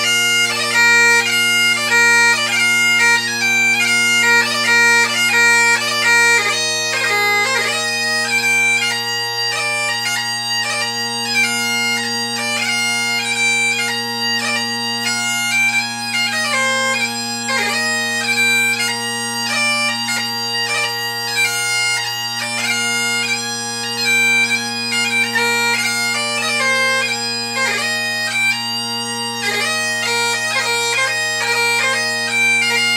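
Great Highland bagpipe played solo in a strathspey and reel set: the drones hold a steady low chord under the chanter melody, which moves quickly from note to note with many short grace notes.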